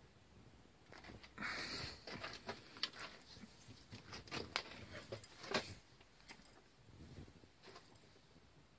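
Faint handling sounds of steel parts in a bench vise: a short scrape about a second and a half in, then scattered light clicks and taps for the next few seconds.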